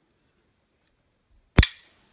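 Zero Tolerance 0055 titanium framelock flipper knife flicked open on its bearing pivot, the blade snapping into lockup with one sharp metallic click about one and a half seconds in, ringing briefly after.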